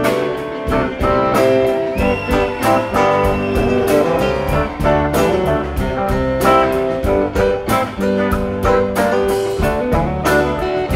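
Live rock band playing an instrumental passage: a drum kit keeps a steady beat under electric guitars, keyboard and bass, with no singing.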